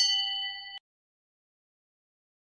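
Notification-bell 'ding' sound effect from a subscribe-button animation: one bright bell chime that rings for under a second and cuts off suddenly.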